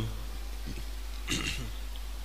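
Two short, low throat noises from a man in a pause between phrases, the louder one about a second and a half in with a falling pitch, over a steady low electrical hum.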